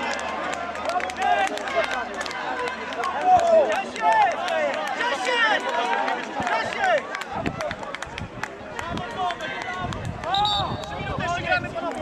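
Several men shouting and calling out across an open football pitch, their voices overlapping, with a few short sharp knocks among them.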